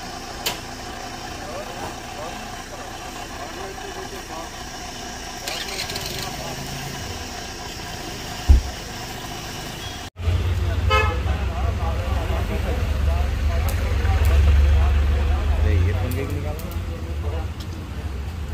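Roadside vehicle noise: an idling car engine's steady hum, broken by a single loud thump about eight seconds in. After an abrupt cut, a much louder low rumble carries on with faint voices over it.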